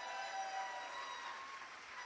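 Audience applauding, with a few faint steady tones underneath.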